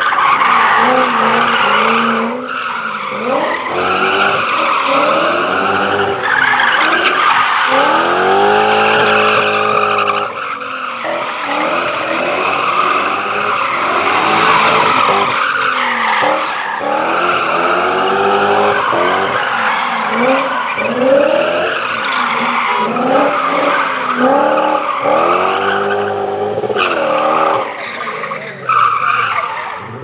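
BMW 530 rally car driven hard on a paved stage. The engine revs up and drops back again and again through the turns, and the tyres squeal as the car slides. The sound fades near the end as the car pulls away.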